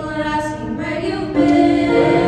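Mixed choir of men's and women's voices singing a cappella, holding sustained chords. The sound swells louder about one and a half seconds in as the voices move to a new chord.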